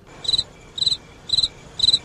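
A cricket chirping: short pulsed chirps repeating evenly, about two a second.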